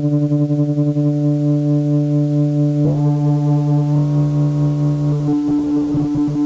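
Roland JP-8080 analog-modelling synthesizer holding one sustained low note while its knobs are turned. The tone changes about three seconds in, when brighter overtones come in, and again a second later. Near the end the pitch wavers.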